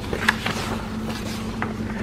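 Sheets of printer paper rustling faintly as they are handled and reordered, over a steady low hum.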